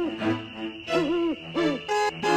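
Cartoon Halloween background music with a sound effect of short pitched calls gliding up and down, in a run at the start and another from about a second in.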